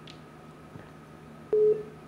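A telephone busy tone sounds over the open phone-in line. After faint line hum, one steady single-pitched beep comes about one and a half seconds in. It is the signal that the caller's call has dropped.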